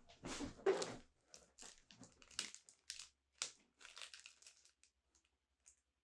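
Crinkling and rustling of a packet of Laser Dub synthetic fibre being handled and opened, in irregular bursts, loudest in the first second.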